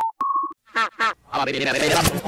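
Electronic beep tones, the second slightly higher, then two short chirps, and from about a second in a wavering, effects-processed robotic voice.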